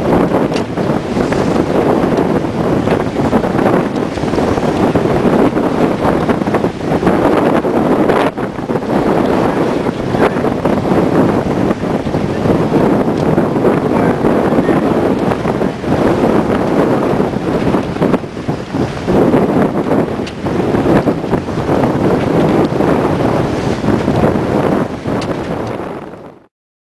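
Strong wind buffeting the microphone on the foredeck of a sailing catamaran under way, mixed with the rush of sea water along the hulls. The noise is loud and gusting, with brief lulls.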